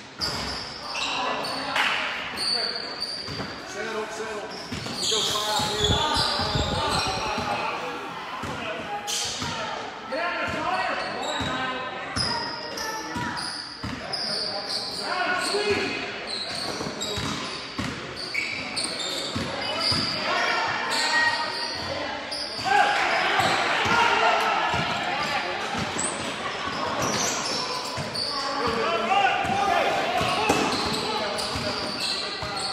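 A basketball bouncing on a hardwood gym floor as players dribble up the court during live play, with many short sharp bounces throughout. Voices of spectators and players call out under it, and the sound echoes in the gymnasium.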